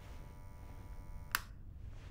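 Steady electrical buzz from a bank of mirror lights, cut off by a single sharp light-switch click a little over a second in, after which only a low room rumble remains.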